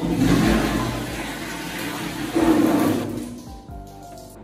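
Toilet flushing: a loud rush of water that starts suddenly, surges again about two and a half seconds in, and dies away before the end.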